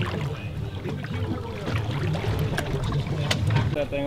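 Low, steady rumble of a boat idling at sea, with wind and water noise and faint distant voices.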